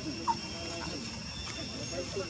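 Macaque calls: a short, rising high-pitched squeak about a third of a second in, among quieter gliding calls, over a steady high-pitched background hum.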